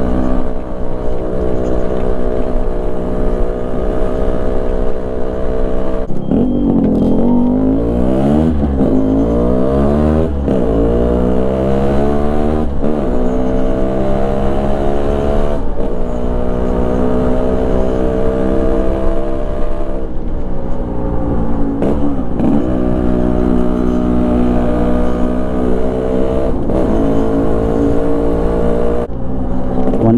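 A Yamaha RXZ's single-cylinder two-stroke engine running under way. It holds steady revs at first. From about six seconds in, the revs climb and fall back four times in quick succession, then settle to a steady run with a few brief dips.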